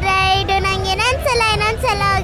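A young girl singing in a high child's voice. She holds a long note at the start, then moves through shorter sliding phrases, over a low background rumble.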